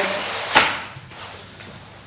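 Neoprene wetsuit rustling as it is pulled onto the legs, with a single thump about half a second in.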